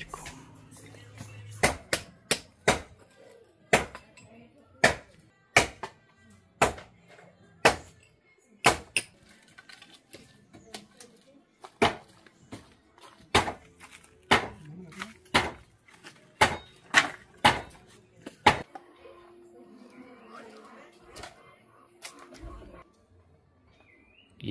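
Sharp, irregular strikes of hand tools from manual digging and building work, about one or two a second, stopping a few seconds before the end; faint voices follow.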